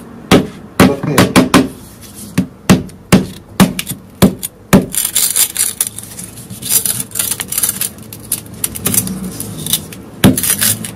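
A knife blade repeatedly strikes a Samsung Galaxy S6's glass screen lying on a wooden board, sharp hits about two a second. About halfway through, the hits give way to a steady crackling and fizzing as the heated blade burns into the screen.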